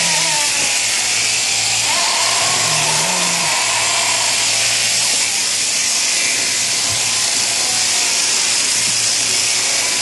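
Electric sheep-shearing handpiece running steadily as it clips a sheep's wool: a continuous motor buzz with a hiss of cutters over a low hum.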